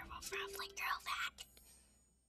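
Soft, whispery speech from a video played over a room's speakers, fading out to near silence about a second and a half in.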